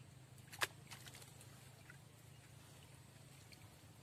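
A faint single sharp splash about half a second in, as a baited fishing line drops into still canal water, followed by a few faint ticks over a faint steady low hum.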